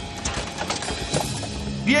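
Cartoon sound effect of a dinosaur's running footfalls approaching, a quick series of knocks, over tense background music.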